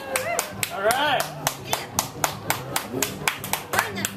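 Rhythmic hand clapping, about four claps a second, keeping time, with a few brief voices calling out about a second in.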